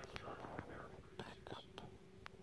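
Faint whispering close to the microphone, broken into short breathy phrases, with a few soft clicks.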